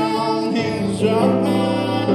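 Live music from a saxophone and electric guitar duo: the saxophone holds sustained melody notes over guitar accompaniment, with a new phrase starting a little past a second in.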